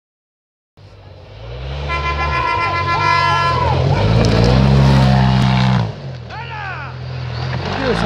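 Side-by-side UTV engine revving hard under load as it climbs a dirt trail, building to its loudest a few seconds in and then dropping off suddenly as the throttle is lifted. Shouting voices and a steady high note ride over it in the first half, with more shouting near the end.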